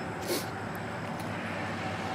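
Steady background hum and hiss with no clear events, and a short breathy hiss about a third of a second in.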